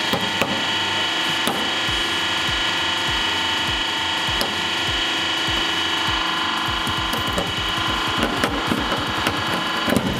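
Hydraulic press crushing a brass padlock. A steady hum runs under a string of sharp cracks and creaks as the lock deforms, and louder cracks come near the end as the brass body breaks apart.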